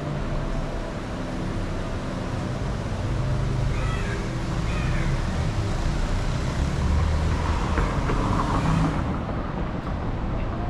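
Town street traffic: car engines running and passing, over a steady roadway noise, with one vehicle a little louder about seven seconds in.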